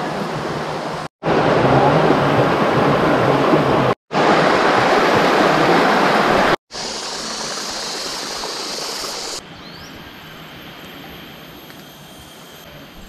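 Fast water rushing down a narrow stone-walled channel, a steady loud noise broken by several abrupt cuts. About three-quarters of the way through it gives way to a much quieter steady outdoor background.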